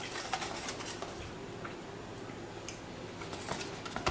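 Quiet room tone with a few faint, light clicks of the cardboard mac-and-cheese box being picked up and handled.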